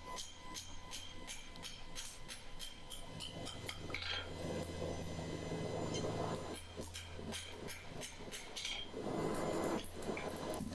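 Steady light hammer blows on a steel bar lying on an anvil, about three a second, with a short metallic ring after each. The bar is being planished at a black heat to smooth out the hammer marks. A steady low hum runs underneath.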